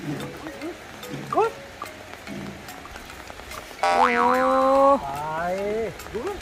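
Playful comic sound-effect music with short springy boing-like sweeps about once a second. About four seconds in comes a louder held pitched sound lasting about a second, then a rising tone.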